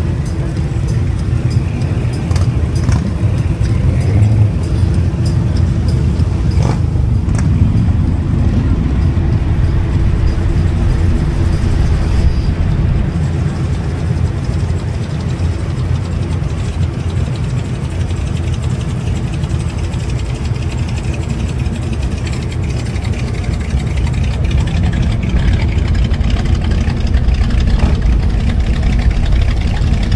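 Car engine running steadily at low revs, close by, with no clear revving.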